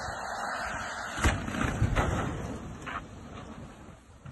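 Low rumble of a semi truck sliding past on an icy highway, with two loud thumps about one and two seconds in and a lighter one near three seconds; the sound fades off toward the end.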